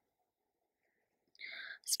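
Near silence, then about one and a half seconds in a short, faint breath from the speaker, unvoiced and whisper-like, just before she speaks again.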